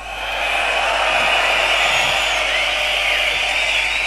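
Crowd cheering and screaming, swelling up just after a song ends, with a few shrill whistles on top.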